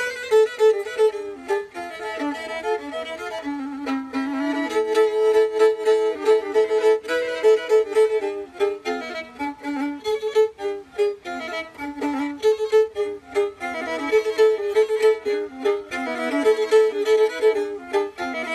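Black Sea kemençe, a three-stringed bowed fiddle, played solo in a fast, busy melody of short bowed notes, often with two strings sounding together.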